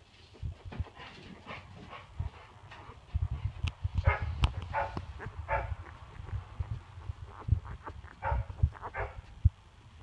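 Newborn puppies squeaking and whimpering in short, high calls, several in quick succession from about four seconds in and a few more near the end. Soft low bumps and rustling run under the calls.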